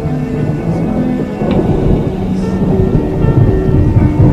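Slow dream-pop music with held notes, layered with steady rain and a low rumble of thunder that builds from about halfway through.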